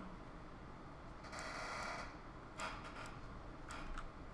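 A few faint, sharp clicks of a computer mouse and keyboard over low room noise, with a short soft rush of noise about a second and a half in.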